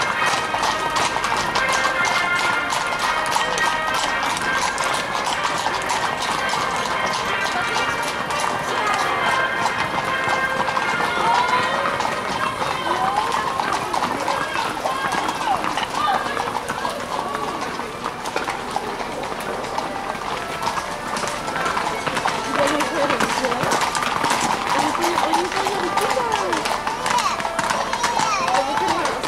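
Horses' hooves clip-clopping on an asphalt road as riders walk past one after another, a steady stream of hoof clicks, with people's voices talking throughout.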